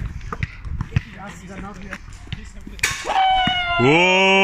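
A few thuds of a basketball on an outdoor court under faint voices, then a man's loud, drawn-out shout from about three seconds in.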